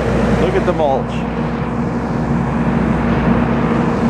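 Steady engine drone with a low rumble, the sound of heavy diesel machinery or a vehicle running. A brief voice is heard about half a second in.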